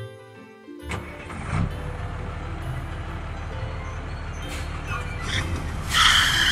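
Truck engine starting about a second in, then running steadily.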